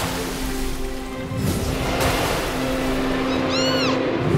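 Cartoon soundtrack music with held notes under a rushing, splash-like noise. Near the end comes a short chirp that rises and then falls in pitch.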